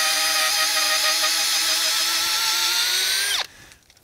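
Cordless drill running steadily in reverse, backing a long auger bit out of a freshly drilled hole in a tree trunk; its motor whine wavers slightly, then drops in pitch and stops about three seconds in.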